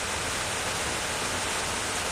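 A steady, even hiss with no other event in it.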